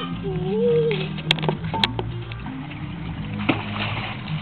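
A young child's brief wordless voice, then two sharp clicks a half second apart, over a faint low steady hum.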